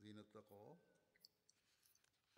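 A man's voice, faint, for the first half second or so, then near silence with a few small clicks.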